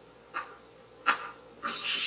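Two short sharp knocks, then a louder scraping rush that starts near the end: a thrown stone striking the frozen lake and skidding across the ice, played from the episode's soundtrack.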